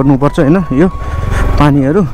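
Mostly a man's voice talking, over the low, steady running of a motorcycle's engine as it is ridden slowly.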